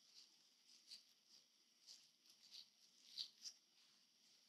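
Faint rustling of a cotton handkerchief and sheer ribbon being handled, a handful of soft brief brushing sounds, the loudest two a little after three seconds in.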